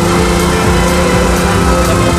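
Ferrari 125 S's V12 engine running at a steady pitch as the open roadster drives along, over background music with a steady beat.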